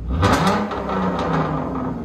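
2012 Dodge Charger's 3.6 L V6 with a straight-piped exhaust (muffler and resonators deleted, high-flow cats) revved hard from idle. The pitch climbs sharply within the first half second, then the engine holds high revs, loud enough to push past 100 dB at the meter.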